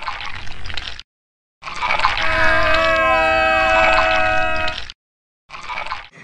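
A dubbed-in sound effect, about three seconds long: a hiss with a chord of steady tones and several tones sliding downward. It starts and stops abruptly, with a cut to silence on either side.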